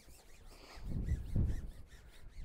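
Wind buffeting the microphone: a low, uneven rumble that swells about a second in and dies away near the end.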